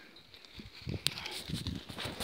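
Faint rustling and soft irregular knocks in dry stubble, with one sharp click about a second in.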